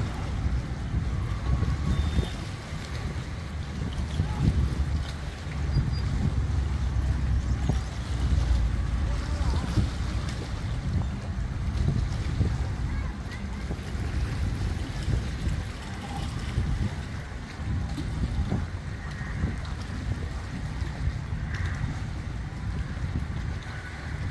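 Wind buffeting an outdoor microphone, an uneven low rumble that rises and falls throughout, with faint voices in the distance.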